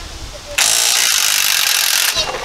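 A Ryobi 300 ft-lb half-inch cordless impact wrench kicks in about half a second in and hammers steadily on a seized wheel-hub bolt, trying to break it loose.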